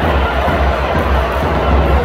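Football stadium crowd singing during play, a dense steady din over a low rumble.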